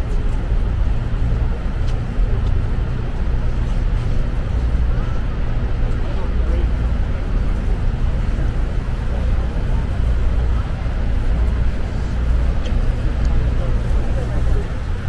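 Deep, steady rumble aboard the Maid of the Mist tour boat close to Niagara's Horseshoe Falls: the boat's engine, wind and the roar of the falling water blended together, with faint passenger voices.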